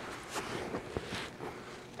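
Jiu-jitsu gi fabric rustling and bodies shifting on a foam mat during a stack guard pass: faint scattered shuffles with one sharper tap about halfway.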